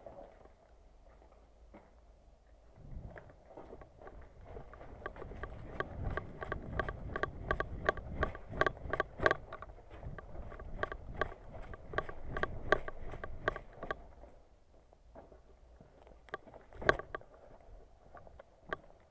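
Quick footsteps on gravelly ground, about three steps a second, heard through a body-worn camera that rattles and rumbles with each stride; the steps fade out about fourteen seconds in, with one louder knock near the end.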